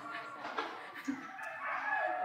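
A rooster crowing faintly, one long drawn-out call.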